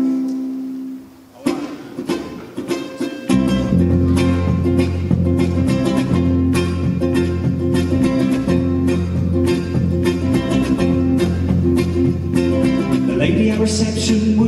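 Electric bass guitar and ukulele starting a song: a held chord rings and fades, a few strums follow, and from about three seconds in the bass comes in with a steady line under rhythmic ukulele strumming.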